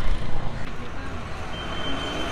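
Busy roadside street ambience: traffic running, with background voices. A thin, high, steady tone comes in near the end.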